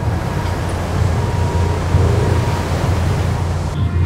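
A ship running at sea: a steady low engine rumble under the rush of seawater breaking along the hull as the bow cuts through the waves.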